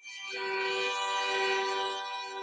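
Two violins bowing a long held chord together, starting on a fresh stroke at the very beginning and sustained steadily, several notes sounding at once.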